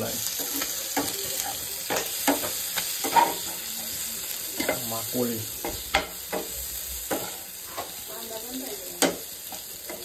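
Food frying in a pan on a gas stove: a steady sizzle, with a steel spatula scraping and knocking against the pan many times at irregular intervals as it stirs.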